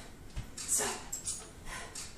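A woman breathing out sharply in time with her side kick and back fist strikes, about one breath a second, with a dull thud of a bare foot landing on a floor mat about half a second in.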